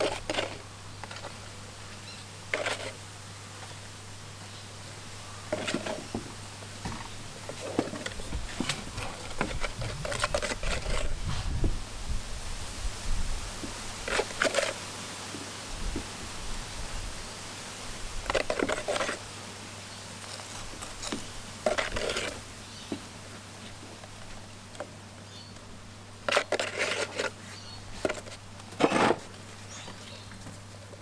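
Intermittent scraping and knocking of a utensil in a plastic tub and against reef rock as wet stone fix cement is scooped out and pressed into the rock seams, in short scattered strokes over a steady low hum.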